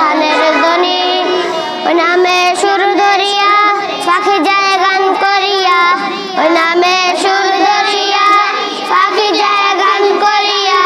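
Three young boys singing a Bengali naat, a devotional song in praise of the Prophet, together, with short breaths between sung phrases.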